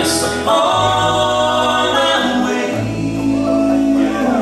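Bluegrass band playing live on banjo, mandolin, acoustic guitars, resonator guitar and fiddle, with voices singing long held harmony notes over the chords.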